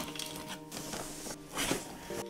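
Cardboard box being pulled open, a scraping rustle of cardboard flaps, over background music with held tones.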